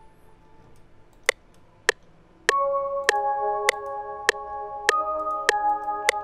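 Two sharp clicks, then about two and a half seconds in an Omnisphere software-synth melody starts playing back: single pitched notes, each with a sharp attack that rings on under the next, a new note about every 0.6 seconds.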